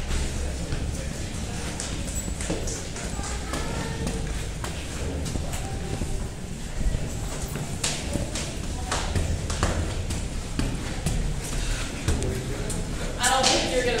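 Footsteps climbing stairs in a stairwell: an irregular run of footfalls and scuffs, with indistinct voices of other climbers in the background and a laugh near the end.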